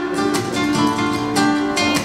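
Acoustic guitar music: plucked notes and chords over held tones, with a steady run of picked strokes.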